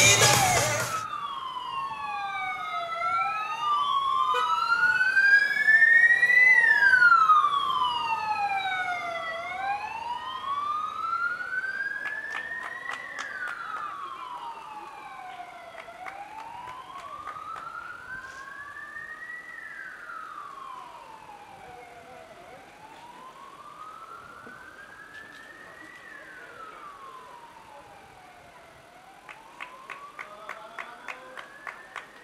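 Emergency-vehicle sirens on a slow wail, each rising and falling over about six or seven seconds. Two sirens overlap at first, then a single one goes on alone. The siren is loudest a few seconds in, then grows steadily fainter as it moves away.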